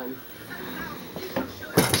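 Faint voices in the room, then one sharp knock just before the end.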